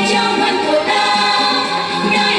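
Children's choir singing a Vietnamese children's song in unison over instrumental backing, holding and moving between sustained sung notes.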